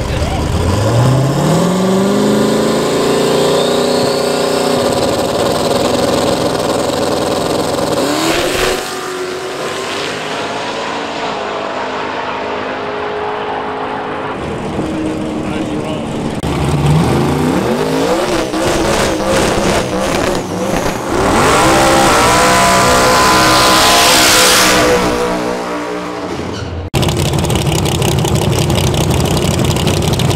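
Mustang drag car launching at full throttle, its engine pitch climbing steeply right away and then holding high down the track. A second climbing engine run follows partway through and is loudest a few seconds before it cuts off abruptly, after which another engine runs steadily.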